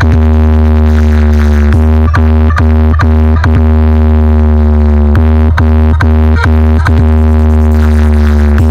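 Electronic speaker-check music played very loud through a stacked DJ sound box rig. A constant heavy bass drone sits under a held synth tone, with sharp beats about two to three a second that drop out twice, the longer pause lasting about a second and a half past the middle.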